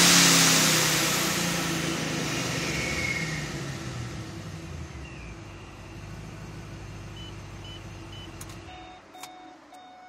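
Supercharged 6.0 L V8 of a 2009 Pontiac G8 GT (ProCharger D1, custom cam) dropping back from a rev to about 3,500 rpm, with a hiss of air that fades over a couple of seconds. It then idles steadily and stops near the end, followed by a few short electronic chime beeps.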